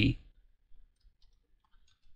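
A few faint, scattered clicks of a computer mouse and keyboard.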